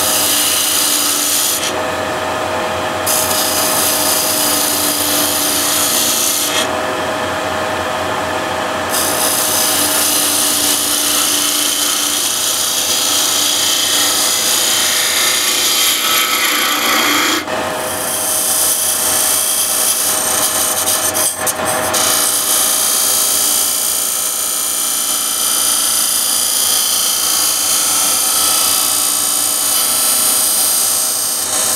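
Wood lathe running with a hand-held turning chisel cutting into the spinning wood, shaving it off in scraping passes over a steady motor hum. The cutting stops for a moment a few times in the first nine seconds, then runs on unbroken.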